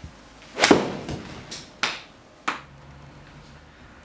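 Cleveland CG1 Tour 7-iron striking a golf ball off a hitting mat: one sharp, loud strike about two-thirds of a second in, followed by several fainter knocks over the next two seconds.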